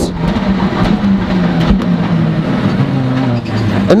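Skoda WRC rally car's engine heard from inside the cabin, pulling hard, then its revs falling in steps near the end as it slows for a hairpin.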